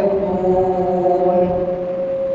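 A man's voice chanting in a melodic religious recitation style, settling into one long held note in the second half.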